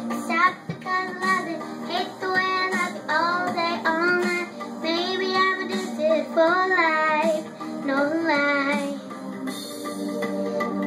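A young girl singing a pop song into a handheld microphone over a karaoke backing track, with held notes that bend in pitch.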